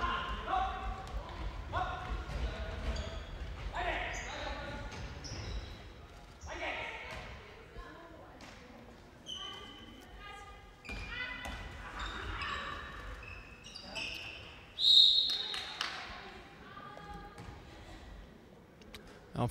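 Sound of a handball game in a sports hall: the ball bouncing on the hall floor, with players' voices calling out in the echoing hall. About three quarters of the way through there is a short, loud, high blast of the referee's whistle.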